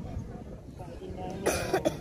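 A person coughs, one short loud cough in two parts about one and a half seconds in, over faint background voices.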